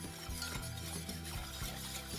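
Background music, with a wire whisk stirring milk and cream in a stainless steel saucepan and clinking lightly against the metal.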